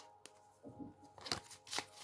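A deck of cards being shuffled by hand: faint, short rustles and clicks of cards sliding and tapping together, starting about half a second in.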